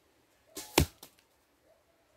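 An arrow arriving at the target with a brief whoosh and striking with a sharp crack, followed by a lighter click about a quarter second later.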